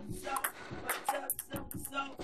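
Table tennis ball clicking off paddles and the table in a quick rally, several sharp hits, with a television playing music and talk in the background.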